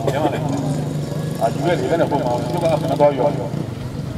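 A man's voice amplified through a microphone and horn loudspeakers, over a steady low hum.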